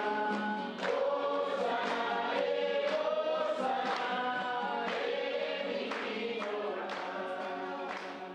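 A choir singing, several voices holding long notes together, gradually getting quieter.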